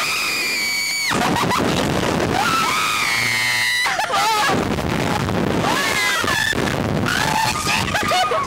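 Two women screaming as a Slingshot reverse-bungee ride launches them. There is one long high scream in the first second and another long scream around three seconds in, then shorter cries, over a steady rush of wind noise on the microphone.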